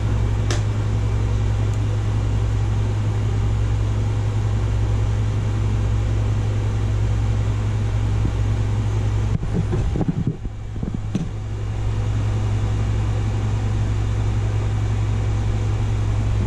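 Steady low hum with a constant whoosh of fan noise from the room's running computers or air conditioning. There is a small click just after the start, and a brief dip with a few low knocks about ten seconds in.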